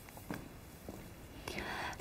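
Quiet pause with a few faint mouth or paper clicks, then a short breath in by the female presenter near the end, just before she speaks.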